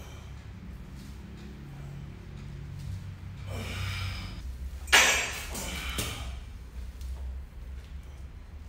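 A man breathing hard through a set of barbell front squats: a long breathy exhale, then a sharp, loud burst of breath about five seconds in and two shorter ones after it, over a steady low hum.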